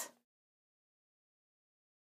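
Near silence: the last syllable of a spoken phrase dies away at the very start, then the sound track is dead silent with no room tone.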